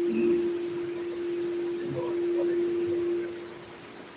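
Microphone feedback through a PA system: a steady single-pitched tone that holds, then fades out shortly before the end.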